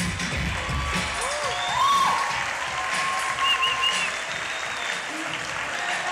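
Dance music with a heavy beat stops about a second in. The audience then applauds, with a few voices calling out over the clapping.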